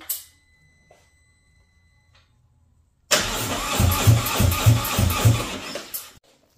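Harley-Davidson Road Glide's V-twin engine started with its fuel pump unplugged, so that it runs the fuel out of the line before the filter change. A steady electronic tone sounds for about two seconds as the ignition comes on. About three seconds in, the engine starts suddenly and runs loud and pulsing.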